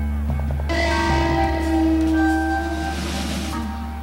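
Background music: sustained low bass notes under held higher notes. A hissing swell builds about a second in and fades near the end.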